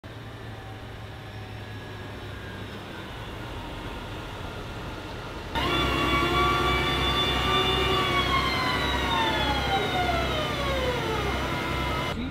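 Chunmoo rocket launcher trucks' engines running as they drive, a fairly quiet steady hum. About five and a half seconds in, a louder whine from a parked Chunmoo launcher as its rocket pod elevates: several steady tones that fall in pitch over the last few seconds, over a low pulsing engine idle.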